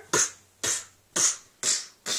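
A person making short, breathy huffs with the voice, about two a second.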